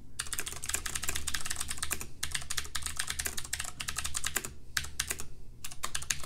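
Typing on a computer keyboard: a fast run of key clicks that pauses briefly about two seconds in and thins out for about a second near the end.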